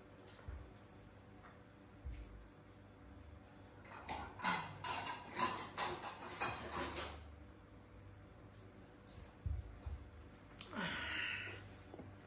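Crickets chirping steadily in a high, pulsing trill, with a few louder knocks and clatters about four to seven seconds in.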